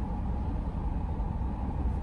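Steady low rumble in a car cabin, with no breaks, its energy heaviest in the lowest pitches.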